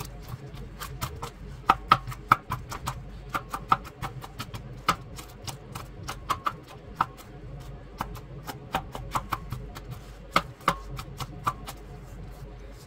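Kitchen knife chopping onion on a plastic cutting board: quick, irregular taps of the blade on the board, several a second. The knife is one the cook calls too dull.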